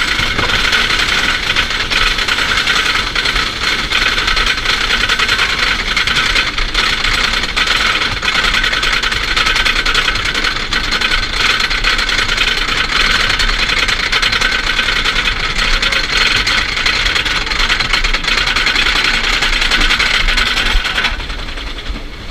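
Lift-hill chain of a GCI wooden roller coaster clattering and rattling steadily as it hauls the train up the lift hill. It stops about a second before the end as the train crests.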